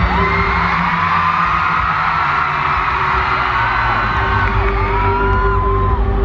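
Live concert music through a big sound system with heavy bass. A crowd whoops and cheers over it, many voices sliding up and down at once.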